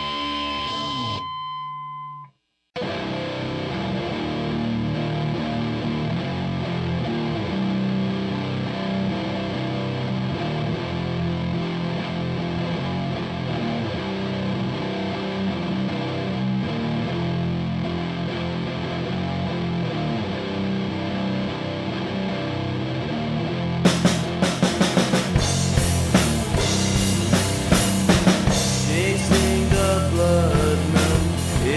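Stoner-rock music: one heavy track ends about two seconds in, and after a brief silence a distorted electric guitar riff starts. Drums come in with hard hits near the end.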